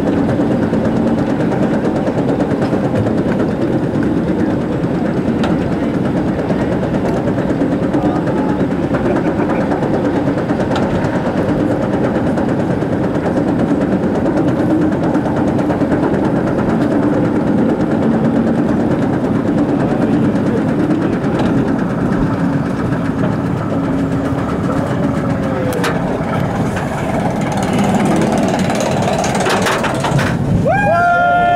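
Roller coaster train being hauled up a tall lift hill by the lift chain: a steady mechanical clatter and rattle with a low hum. It gets a little louder in the last couple of seconds as the train reaches the crest.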